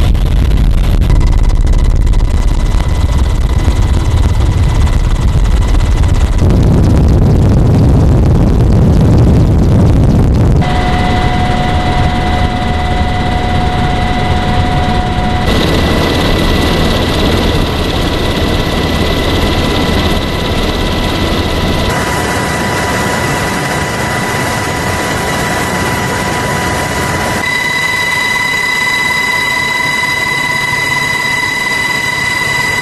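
Helicopter running, with a heavy low rumble and a steady high turbine whine. The sound changes abruptly several times, with the rumble strongest in the first ten seconds and the whine loudest near the end.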